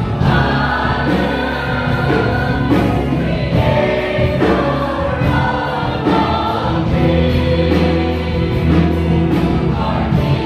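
Large mixed choir of adults and children singing a gospel worship song together, sustained and steady.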